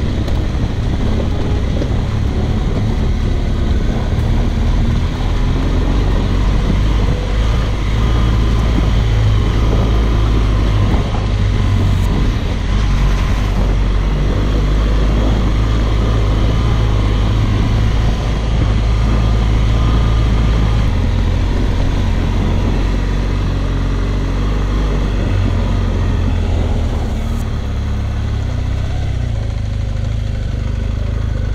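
Adventure motorcycle engine running steadily under way on a rocky gravel track, with wind and tyre noise over it. The engine note changes about twenty seconds in.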